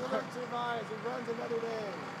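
Men's voices laughing and exclaiming in excitement, with no clear words.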